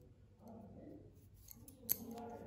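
Knitting needles working a stitch: small faint clicks and yarn rubbing, then one sharp click of the needles near the end.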